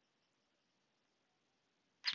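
Near silence: a faint, even background hiss with no distinct sounds.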